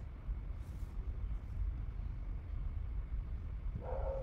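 Steady low background rumble with no distinct event, and a short vocal sound as the narrator starts to speak near the end.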